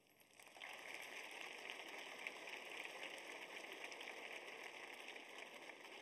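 Audience applauding, faintly, starting about half a second in and continuing steadily.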